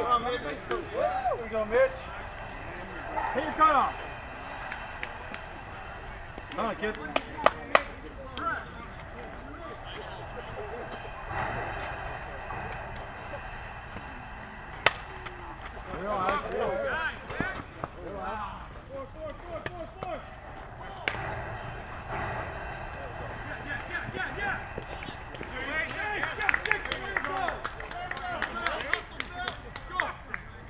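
Voices of softball players talking and calling out across the field over steady outdoor ambience, with several sharp knocks: a quick cluster about a quarter of the way in and a single one near the middle.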